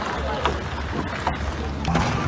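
Outdoor street recording with a steady low rumble and people's voices in the background.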